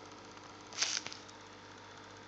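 Faint steady hum, with one short rustle of handling noise a little under a second in.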